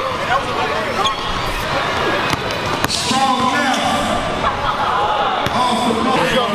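Basketball dribbled on a hardwood gym floor, a few sharp bounces spaced apart, over the chatter of spectators' voices.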